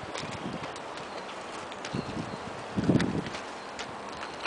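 Footsteps on gravel: a few irregular crunches and thumps, the loudest about three seconds in, over faint outdoor background noise.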